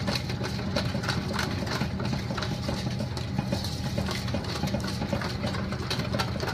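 Wire whisk clicking and scraping against a stainless steel mixing bowl while stirring thick melted chocolate, over a steady low hum.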